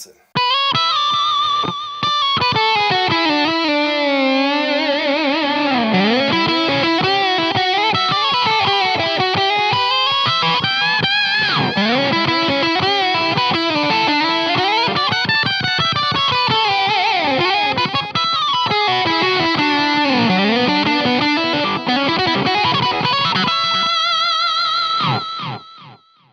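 Electric guitar played through an octave effect, a loud sustained lead line full of string bends and slides. It starts just after the opening and stops shortly before the end.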